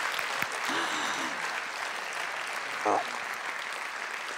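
Audience applauding steadily, easing off slightly toward the end.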